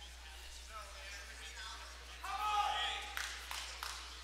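Indistinct voices echoing in a large gymnasium, with one voice calling out loudly for about a second midway, followed by a few sharp claps near the end.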